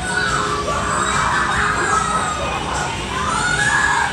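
Children shouting and screaming in a crowd, the shrill cries rising and falling in pitch in two waves, one near the start and one near the end.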